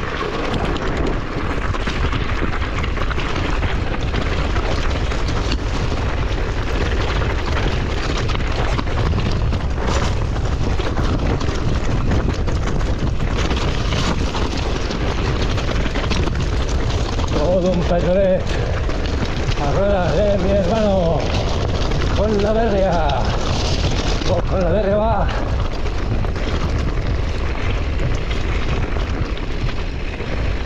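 Wind buffeting the microphone and mountain bike tyres rattling over loose rock on a steep descent, a steady rushing noise throughout. From about two-thirds of the way in, a wavering voice-like sound rises and falls for several seconds.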